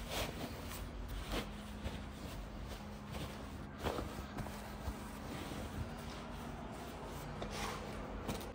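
Soft rustling and brushing of padded fabric as hands smooth and tuck a quilted mattress liner into a Cybex Priam pram carrycot, in a few brief strokes.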